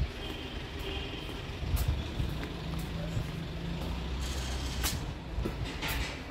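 Road traffic: a motor vehicle engine running low and steady, with a steadier low engine note for a couple of seconds mid-way, and scattered footsteps on paving stones.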